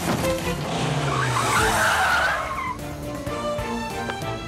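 A car's tyres skidding: a noisy screech lasting about a second and a half that trails off in a falling glide, over background music with held notes.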